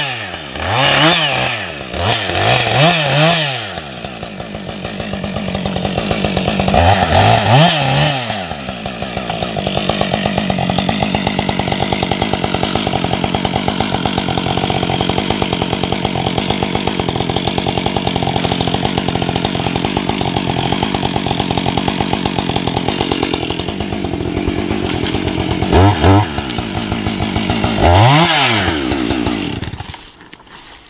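Two-stroke chainsaw running, revved up and down in short blips several times with steadier lower-speed running in between, then cutting off sharply at the end.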